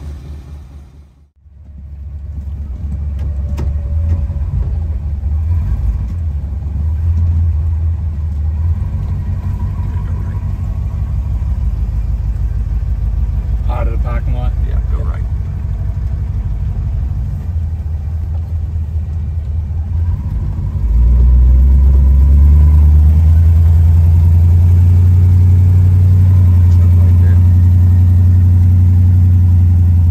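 1954 Mercury's 256 cubic-inch V8 heard from inside the cabin while driving: a low, steady engine rumble that grows markedly louder about two-thirds of the way through as the car pulls away and accelerates.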